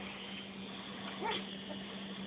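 A feist puppy gives one short high cry that rises and falls, about halfway through, over a steady low hum.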